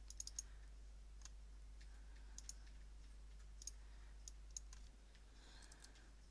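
Faint computer mouse clicks, short and sharp, some in quick pairs, scattered every second or so over a low steady hum.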